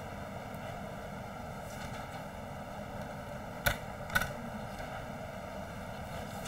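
Two sharp computer-mouse clicks about half a second apart, over a steady faint hiss of the recording.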